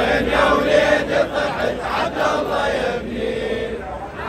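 A large crowd of men chanting a Muharram noha, a mourning lament for Ali Asghar, together in loud unison.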